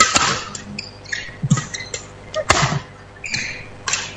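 Badminton rally: sharp racket strikes on the shuttlecock, one at the start, a louder one about two and a half seconds in and another near the end, with short shoe squeaks and footfalls on the court between them.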